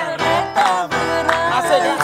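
A woman singing an upbeat song in a wavering, gliding voice over backing music with guitar and a steady beat.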